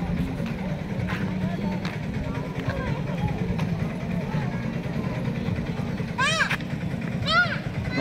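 A young child's excited high-pitched squeals, twice near the end, over quieter child voices and a steady low rumble.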